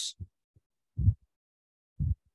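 A few short, dull low thumps, the loudest about a second in.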